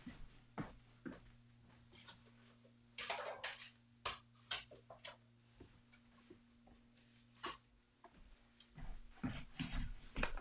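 Faint, scattered knocks and clatter of someone handling things across a room, over a low steady hum that stops about nine seconds in. The handling noise grows louder in the last second.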